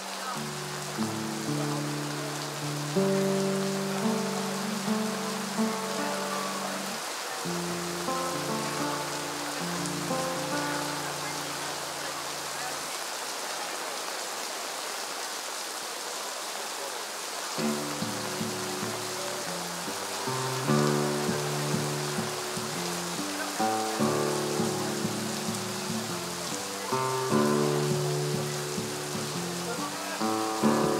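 Classical guitar sounding held notes and chords, falling silent for a few seconds midway and then picking up again, over a steady hiss of rain.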